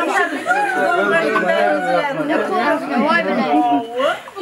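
Several people talking at once, their voices overlapping in lively chatter.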